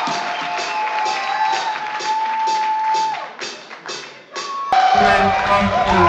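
Live rock music led by electric guitar: a long held guitar note over a pulsing beat, which fades away around three seconds in. Just before five seconds in, an abrupt cut brings in the next song, with guitar over a heavier, fuller backing.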